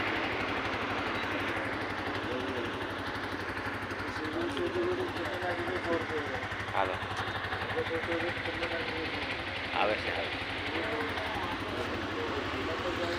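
Steady street traffic noise, with people talking over it from about four seconds in.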